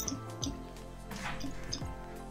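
Small jingle bells dropped one at a time into a bottle of glittery water, a few faint clinks and plops, over soft background music.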